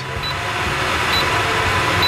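Caravan kitchen rangehood exhaust fan running with a steady rushing of air, getting a little louder as its speed is stepped up, with a couple of short high beeps from its touch controls.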